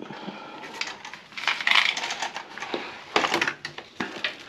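A few light knocks and clatters of hard objects being handled, with a short scraping rustle about one and a half seconds in.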